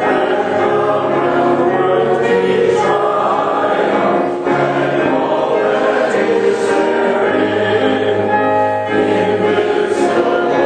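A church congregation singing a hymn together with piano accompaniment, held notes of many voices moving line by line, with short breaks between lines about four and nine seconds in.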